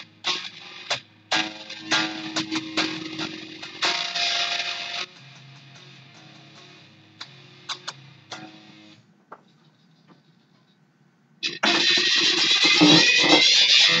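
Loose live instrumental playing led by a guitar: a run of picked and strummed notes over held tones that thins out and fades after about nine seconds. After a short near-quiet gap, a loud, dense wash of noisy sound comes in for the last two and a half seconds.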